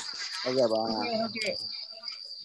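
A steady high-pitched tone holds one pitch throughout, with a low voice sounding faintly for about a second in the middle.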